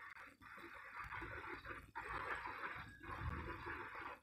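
Faint steady background hiss with a low rumble beneath it, briefly cutting out a few times: microphone room noise between words.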